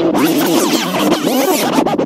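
Music with record scratching: quick back-and-forth pitch sweeps that rise and fall several times a second.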